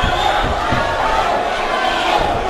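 Crowd of spectators shouting and cheering at a boxing bout, many voices overlapping, with a few dull low thuds underneath.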